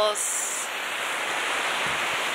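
Ocean surf breaking and washing up a sand beach, a steady hiss of waves.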